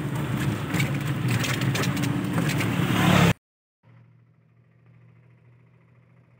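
Road noise of a moving passenger rickshaw, a steady rumble with scattered rattles. It cuts off suddenly about three seconds in, leaving only a faint low hum.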